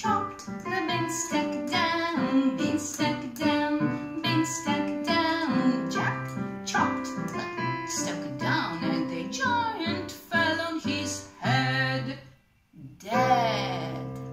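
A woman singing a children's song while accompanying herself on a digital piano. The music breaks off briefly about twelve and a half seconds in, then comes back with a final held chord under a gliding vocal.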